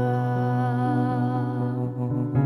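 Singing: a man and a young girl hold one long final note of an acoustic pop song, easing off slightly near the end.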